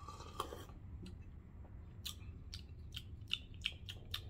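A faint sip from a coffee cup, followed from about two seconds in by a run of sharp wet mouth clicks and lip smacks, four to five a second, as the coffee is tasted.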